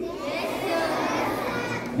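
A large crowd of schoolchildren answering together, many young voices overlapping into one continuous sound.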